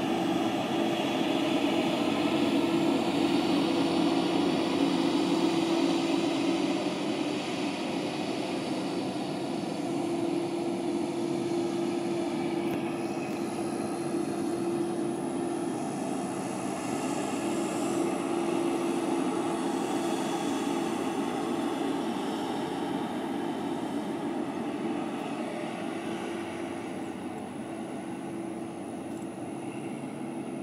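Semi tractor-trailer's diesel engine running steadily as the truck drives across a dirt lot, heard from a distance, growing a little quieter as it moves away.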